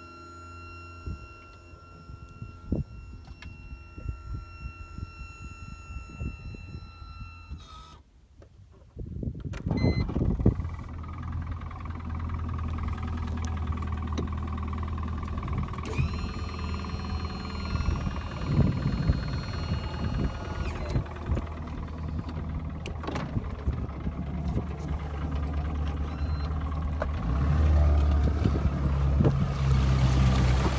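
Evinrude E-TEC 130 two-stroke outboard idling, with a brief drop-out about eight seconds in before it runs again. Near the end the engine note swells as it starts to push the boat off for a holeshot in shallow water.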